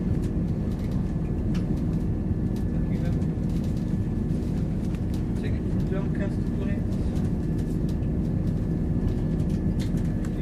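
Class 170 Turbostar diesel multiple unit heard from inside the carriage while under way: a steady rumble of its underfloor diesel engines and wheels on the rails, with a faint high whine and scattered light clicks.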